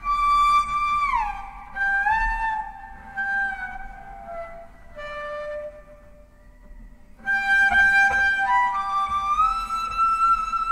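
Swedish harp bass, a 3D-printed carbon-fibre double bass with 39 sympathetic strings, bowed in a high register. Held notes are joined by smooth slides down and up in pitch; the playing softens in the middle and swells louder again from about seven seconds in.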